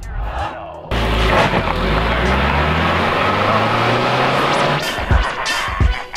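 A car engine sound effect starts abruptly about a second in and runs loud and steady for about four seconds. A music track with a beat comes in near the end.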